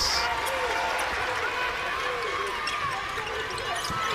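Basketball being dribbled up the court on a hardwood floor, over a steady background of arena noise.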